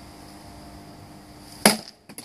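A single sharp crack about one and a half seconds in as a Böker Magnum Blind Samurai sword blade strikes and cuts through an upright wooden pole.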